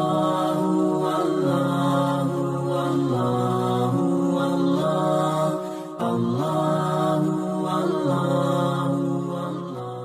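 Channel ident jingle music of long held notes stepping between pitches. It breaks off briefly about six seconds in, starts again, and fades out near the end.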